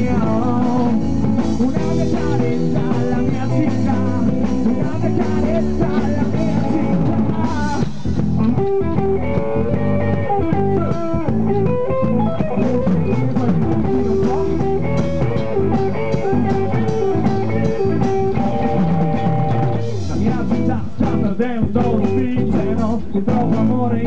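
Live rock band playing an instrumental passage: electric guitar playing a lead line over a drum kit, loud and steady.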